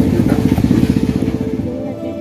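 A small engine running with a fast, even putter that fades gradually.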